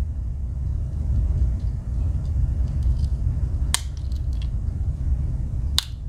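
Swiss Army knife tools snapping on their backsprings as they are closed and opened: a few sharp metal clicks, the loudest about four seconds in and just before the end, over a steady low rumble.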